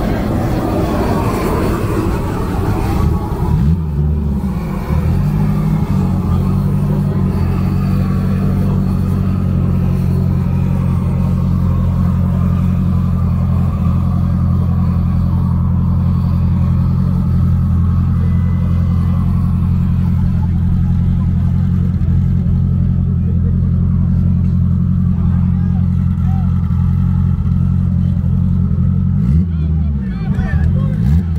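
A car engine idling steadily close by, a low, even hum that settles in about four seconds in and stops just before the end, with people talking around it.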